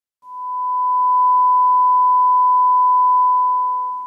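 A steady sine-wave audio test tone with a fainter tone an octave below it. It swells in over about a second and fades out near the end, a line-up test of the internet radio stream.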